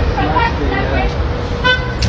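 Voices of people on a busy city street over a steady low rumble of traffic, with a short, high toot, like a vehicle horn, near the end.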